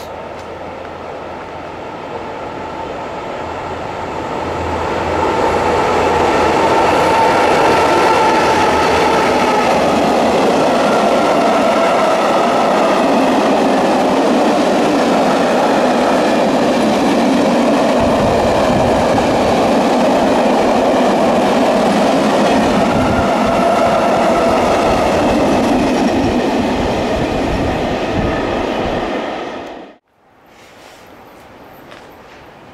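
Freight train of white silo wagons passing close at speed: the sound builds over the first six seconds as it approaches, then holds loud and steady with the rush of wagons and wheels on rail. Low knocking of wheels runs through the second half, and the sound cuts off abruptly at the end.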